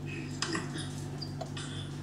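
Faint rustles and light clicks of plastic packaging as raw salmon fillets are pulled from their tray, over a steady low hum.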